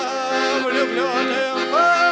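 A man singing long, wavering notes over the held chords of a piano accordion.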